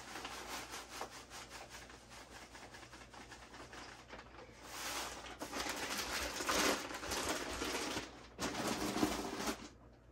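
Perlite pouring from a plastic bag into a stainless steel bowl of potting soil: a dense, fine rattling hiss of light granules. After that, the plastic bag rustles and crinkles as it is folded shut and set aside, loudest about five to eight seconds in.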